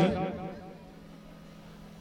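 A pause in amplified speech: the last word trails off through the microphone and dies away within about half a second, leaving a faint, steady low hum and soft background noise.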